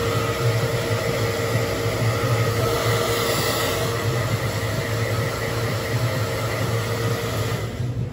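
Handheld hair dryer running steadily with a blowing rush and a steady hum, switched off near the end.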